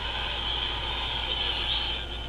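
C. Crane CC Pocket radio's built-in speaker on the AM band giving out a steady static hiss with a low hum beneath, no station coming through clearly. This is weak AM reception, which the owner puts down to the steel building and the electronics around it.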